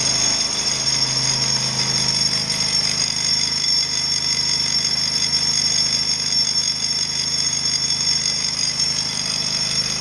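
Handheld electric breaker hammer chipping steadily into a hard, heavily reinforced concrete pillar, with a portable generator running behind it to power the tool.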